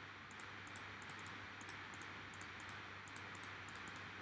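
Faint room tone: steady microphone hiss with faint, irregular high-pitched ticks.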